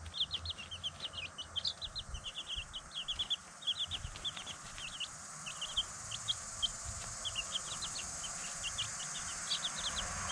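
Chicks peeping: many short, high cheeps in quick succession, densest over the first four seconds, then more scattered.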